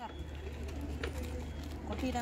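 Faint outdoor background: a low, steady rumble with faint voices.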